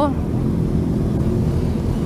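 Several motorcycle engines running at low revs, a steady low rumble with no single rev standing out.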